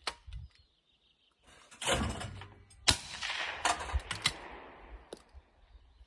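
Over-and-under shotgun with an Atec A12 suppressor firing a single S&B subsonic shell: a sharp report just before three seconds in, its echo resonating between the valley sides and fading over about two seconds. A shorter, duller burst of noise comes about a second before the report.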